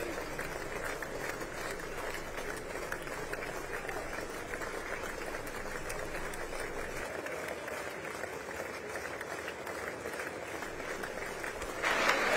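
Members of Congress applauding steadily, the clapping growing louder near the end.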